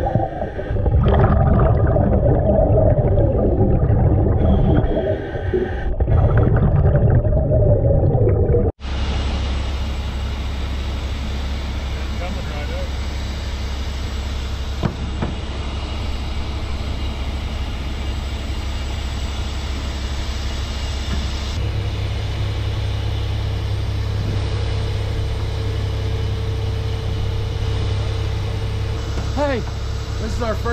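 Muffled underwater rumble and bubbling of scuba gear. After a cut, a heavy tow truck's engine runs steadily while its crane winch pulls a sunken vehicle from the river, and its low hum steps up partway through.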